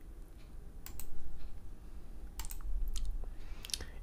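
A handful of faint, sharp clicks scattered over a low steady hum.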